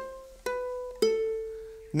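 Makai concert ukulele with nylon-type strings, played fingerstyle: three single melody notes plucked about half a second apart, each a step lower than the one before. The last note is left to ring and die away.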